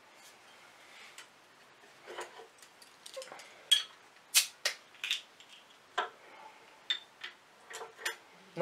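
Bottle opener levering the metal crown cap off a glass beer bottle: a string of sharp metallic clicks and clinks, loudest around the middle, then a few lighter clicks.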